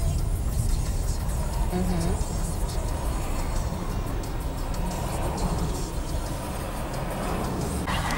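Steady low road and engine rumble heard from inside the cabin of a car moving through city traffic.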